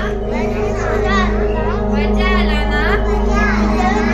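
Music with a high voice singing in long, wavering melodic phrases over a steady low drone.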